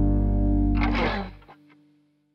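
The song's final held chord on a distorted electric guitar over bass, ending in a short burst of noise about a second in. Then the music cuts off, leaving a faint ringing tone that fades out.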